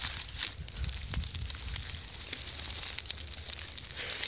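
Footsteps crunching through dry straw and stubble on loose tilled soil: scattered irregular crackles over a steady low rumble.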